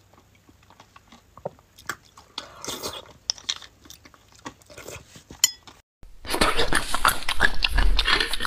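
Close-miked eating of beef bone marrow: soft chewing and wet mouth sounds with scattered light clicks of a metal spoon against the bone. About six seconds in, the sound cuts out for a moment, then a much louder, denser run of slurping and chewing begins.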